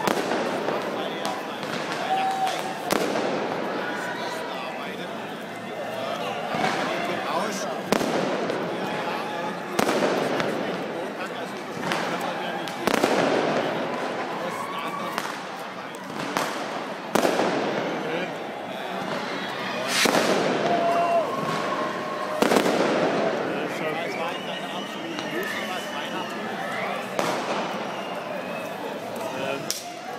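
Fireworks and firecrackers going off in a city square: about a dozen sharp bangs spaced a few seconds apart, each echoing off the surrounding buildings, the loudest about two-thirds of the way through. People's voices are heard between the bangs.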